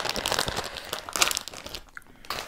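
Plastic candy bag of Hi-Chew crinkling as it is handled, with irregular crackles that die away near the end.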